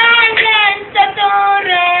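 A high, woman's voice singing an Italian love song without accompaniment, holding long notes that step down in pitch toward the end.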